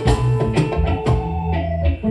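Recorded instrumental backing track with a drum beat, bass line and guitar.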